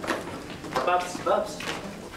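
A sharp knock right at the start, then a few words of speech that the recogniser did not write down.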